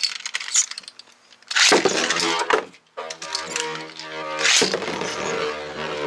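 Two metal-wheeled Beyblade spinning tops are launched into a plastic stadium about a second and a half in, with a sudden clatter. They then spin with a steady whirring ring, knocking against each other and the stadium floor.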